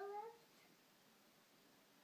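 A young child's voice giving one short, high, rising sound right at the start, then near silence.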